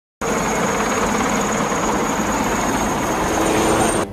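Helicopter rotor and turbine noise from a film soundtrack, loud and steady with a thin high whine; it starts abruptly and cuts off suddenly.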